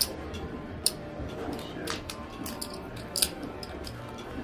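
Casino chips and cards set down on a blackjack table: a handful of separate sharp clicks over a low murmur of voices.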